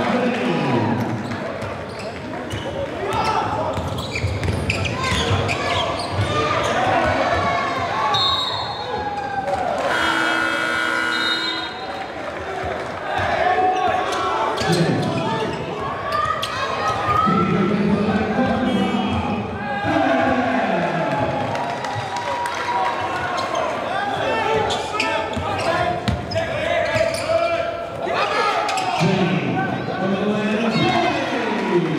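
A basketball dribbling and bouncing on a hardwood gym floor during play, among the voices of players and spectators echoing in a large gym.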